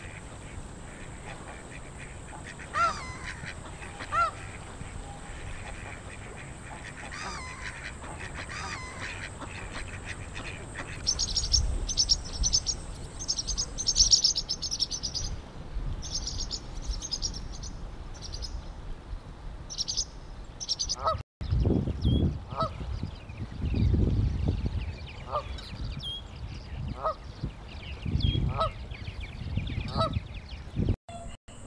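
Canada geese honking now and then. A dense run of high, rapid bird chirping comes in the middle, and low rumbling runs under the later honks.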